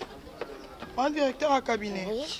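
A woman's voice: a quiet pause, then a short burst of speech about a second in.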